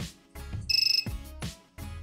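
A short electronic buzzer beep from the Arduino coin machine about 0.7 s in, lasting about a third of a second with a fast pulsing buzz, as the settings button is pressed. A few light handling knocks come before and after it.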